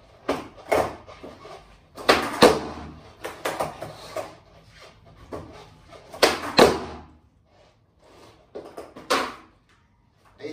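Skateboard ollies on a wooden floor: sharp clacks of the tail popping against the floor and the board landing, coming in pairs about half a second apart, with the loudest pairs near the middle.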